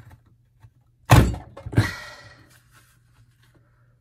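Plastic border punch pressed down hard through patterned paper: two loud clunks about two-thirds of a second apart, the second trailing off over about a second. The punch is stiff and hard to press.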